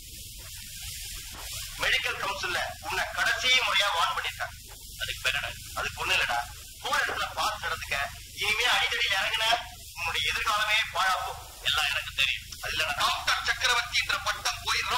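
Men talking: Tamil film dialogue over a faint steady low hum from the old soundtrack.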